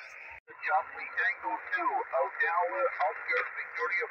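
Single-sideband voice from a distant amateur station coming through a Yaesu FT-817 receiver's speaker on the 20-metre band: narrow, tinny and unintelligible, over steady receiver hiss. The sound briefly drops out about half a second in.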